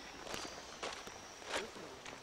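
Footsteps crunching and rustling through a thick layer of fallen leaves and twigs on the forest floor, about four steps.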